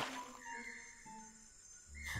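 Faint background music: a few soft, held notes, with the sound dying away after the first half-second.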